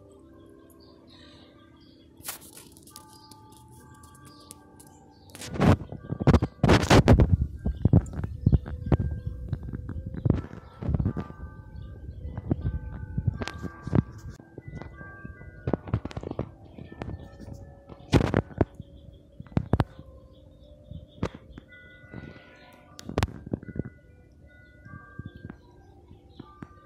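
Ringing chime-like tones at several different pitches, sounding on and off, mixed with irregular sharp knocks and clicks that are loudest about six to eight seconds in.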